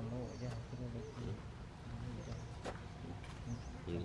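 Voices talking in the background, with a bird giving a short high chirp every second or two over a low, uneven hum.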